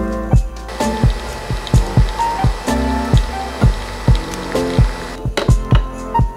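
Nespresso Vertuo capsule coffee machine brewing: a steady whirring hiss that starts about a second in and stops shortly before the end, under background music with a steady beat.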